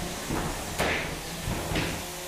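A 3 lb combat robot's spinning drum weapon striking a big-wheeled opponent and lifting it onto one wheel: a sharp impact about a second in, a smaller hit near the end, over a steady low hum.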